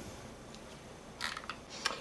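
Quiet room tone with a few faint, short clicks a little past a second in and again near the end.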